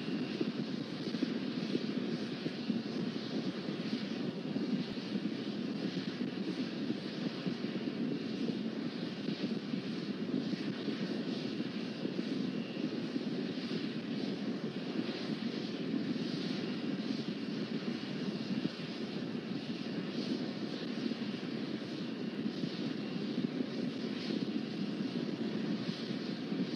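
Steady rumble and hiss of Starship SN8's Raptor methane rocket engines firing during powered ascent.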